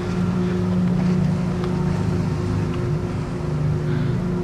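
A steady low engine drone, as of a motor idling close by, with a few faint pops.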